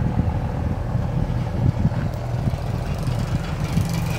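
A steady low motor hum, with no change in pitch.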